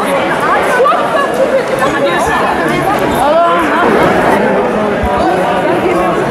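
Many people talking at once in a sports hall: overlapping chatter of several voices, with no single speaker standing out.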